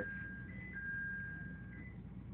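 Inside a moving train car: a steady low hum from the train, with a thin high whine that steps back and forth between two pitches a few times.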